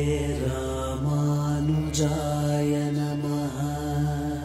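A voice chanting a Sanskrit devotional hymn in long held notes, the pitch shifting every second or so, over a steady low drone.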